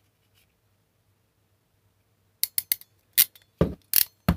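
Hand crimping tool working a terminal onto a wire: a run of short, sharp clicks and a couple of heavier clacks, starting about two and a half seconds in after a near-silent start.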